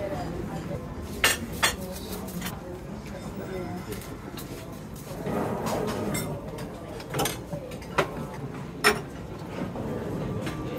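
Crockery and cutlery clinking at a busy self-service buffet: a few sharp clinks, two close together about a second in and more near the end, over background chatter.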